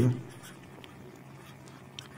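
Marker pen writing on paper: a few faint strokes over a steady low room hum.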